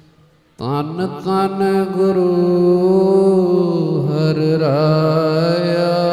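Gurbani kirtan singing: after a brief lull, a ragi's voice comes in about half a second in with an upward scoop and holds long sung notes over harmonium, the pitch wavering toward the end.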